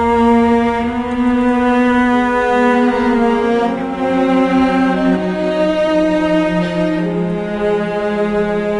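Symphony orchestra, strings to the fore, playing long sustained notes and chords whose pitches shift slowly, some sliding down and others stepping up.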